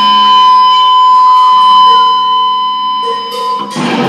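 Seven-string electric guitar through a Blackstar HT Studio 20H valve amp and 1x12 cabinet, distorted. One note is held and sustains steadily for about three and a half seconds, then a new chord is struck near the end.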